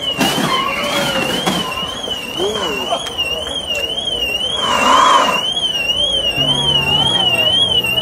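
A car alarm sounding continuously, a single electronic tone warbling up and down about twice a second, over people's voices. A brief louder burst of noise comes about five seconds in.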